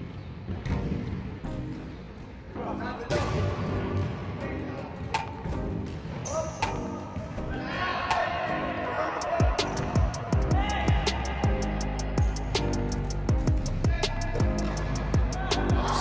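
A basketball bouncing repeatedly on an indoor court, over background music; the bounces come thicker in the second half.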